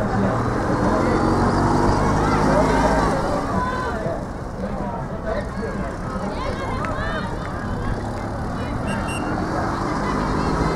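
Sideline spectators at a youth soccer game, their voices calling out and chattering without clear words, over a steady low hum that is strongest in the first three seconds and eases after that.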